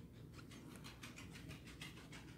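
Near silence, with faint scratchy handling noise from hard plastic card cases being shifted in the hands.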